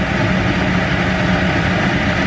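Steady rumbling hum and hiss from the stove, where a pot of water is coming to the boil.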